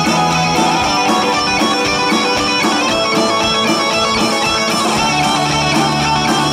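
Live rock band playing: electric guitar and bass guitar over a steady drum-kit beat, loud and without a break.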